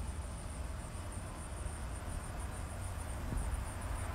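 Insects, likely crickets, chirping in a steady, evenly pulsing high trill, over a constant low rumble.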